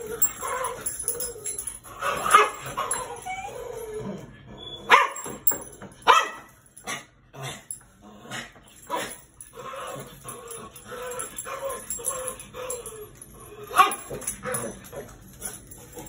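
Pet dogs vocalizing: a run of whining, grumbling sounds broken by a few short, sharp barks or yips.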